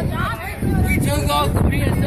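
Several people's voices talking and calling out over low wind buffeting on the microphone.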